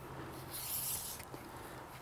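A metal telescoping whip antenna section being slid out by hand: a soft scraping hiss for under a second, starting about half a second in, with a faint tick after it.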